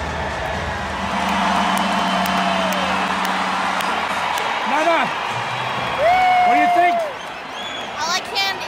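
Ballpark crowd noise: a large stadium crowd cheering and applauding as a steady roar, with whoops and calls from fans close by and one long held call about six seconds in.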